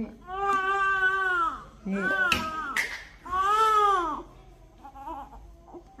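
A baby crying in three long cries of about a second each, every cry rising and then falling in pitch, with short breaths between. The crying stops about four seconds in.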